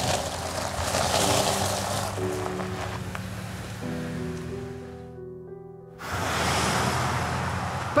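Background music with held notes, over the hiss of a Land Rover Discovery 4 driving off across gravel and onto the road. The hiss fades, drops out for about a second past the middle, then comes back.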